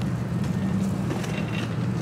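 Steady low hum of vehicle engines and traffic in a parking lot.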